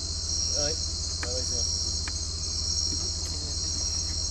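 Dense night chorus of crickets and other insects: a steady, unbroken high shrill, over a steady low hum.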